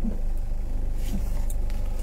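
Steady low rumble of a car running, heard from inside the cabin.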